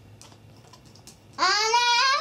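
Faint crackling clicks of vinegar fizzing on baking soda in a model volcano. About one and a half seconds in, a high, drawn-out excited voice cuts in, rising in pitch, and it is the loudest sound.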